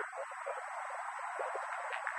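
Faint hiss of an open telephone line, narrow in pitch range, with a thin steady high whine underneath.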